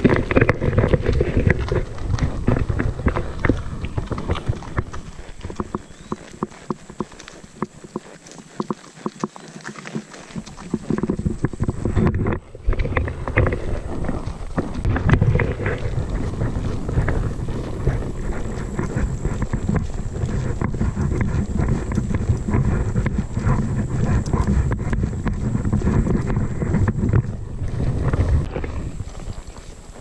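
Saddle mule walking, her hooves clip-clopping in a steady run of knocks and rustles, first on a dirt trail and then through grass.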